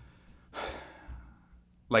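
A man sighing: one long breathy exhale about half a second in.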